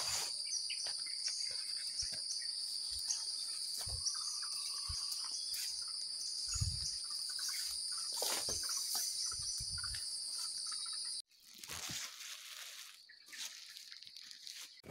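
Steady, high-pitched insect chorus in the forest, with occasional short chirps and a few low thumps over it. The chorus cuts off abruptly about eleven seconds in, leaving quieter rustling.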